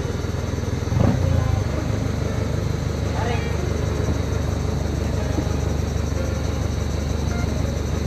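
Steady low drone of a motorized outrigger boat's engine running under way, with brief voices over it.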